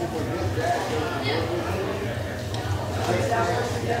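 Indistinct chatter of several people talking in a room, over a steady low hum.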